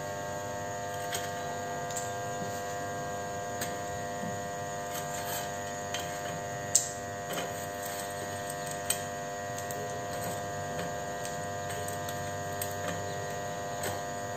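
Steady electrical hum with several even tones, and a few light clicks scattered through it, the sharpest about two thirds of the way in, as whole spices are dropped into a stone mortar.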